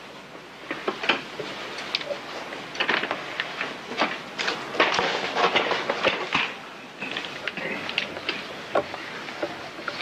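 A large paper map on an easel rustles and crackles as it is handled and pressed flat against the board, with irregular knocks and clicks from the easel being moved. The noise is loudest in the middle.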